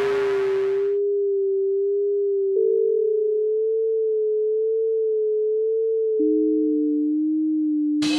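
Computer-synthesized electroacoustic music: a dense sampled texture cuts off about a second in, leaving a pure sine tone that wobbles slightly in level. A slightly higher sine tone enters with a click about two and a half seconds in and overlaps the first briefly, and a lower one takes over with a click about six seconds in.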